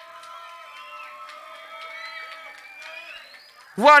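A quiet lull in a rave set recording: faint held tones from the music, with faint crowd noise underneath.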